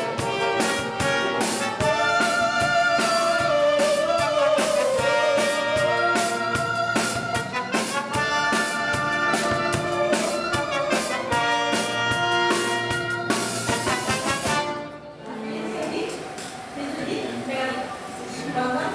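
An orchestra with strings, brass and drums playing a loud, lively passage with a steady beat. About fifteen seconds in, the full ensemble cuts off and a quieter passage of sustained brass and string notes follows.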